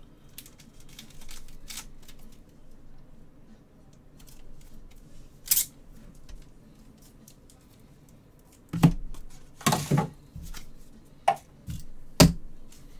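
Hands handling trading cards in hard clear plastic holders: scattered light clicks, a short sharp scrape about halfway through, then a run of louder knocks and taps on the table near the end.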